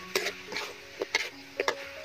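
Metal spatula scraping and clinking against a large steel wok as meat and greens are stir-fried, about five sharp strokes over two seconds, with a light sizzle of frying food between them.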